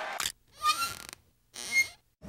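The closing music cuts off, then two short squeaky sound effects play about a second apart with dead silence around them. Each has a faint rising tone.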